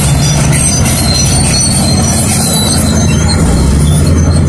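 Crawler bulldozers' diesel engines running under load in a steady low drone, with a high metallic squeal from their steel tracks.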